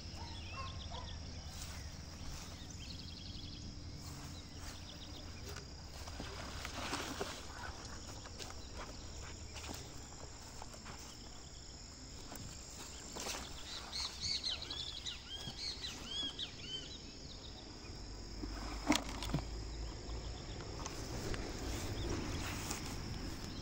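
Rural outdoor ambience: a steady high insect drone, with a bird chirping in a run of short calls about two-thirds of the way through. Brushing and rustling of weeds as someone walks through them, with a sharp click near the end.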